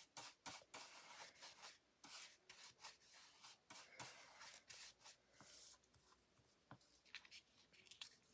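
Faint, quick strokes of a stencil brush's bristles rubbing inked colour onto card, a rapid irregular run of soft scratchy brushing that thins out near the end.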